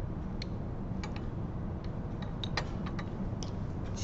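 Light, irregular clicks and taps of glass test tubes being handled in and against a wire test-tube rack, about ten in all, over a steady low background hum.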